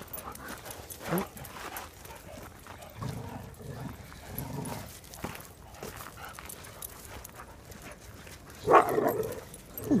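Several dogs play-fighting, with low growling through the middle and a loud bark near the end.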